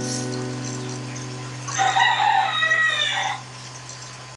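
The last strummed chord of an acoustic guitar ringing out and slowly dying away, while a rooster crows once, loud and about a second and a half long, a little under two seconds in.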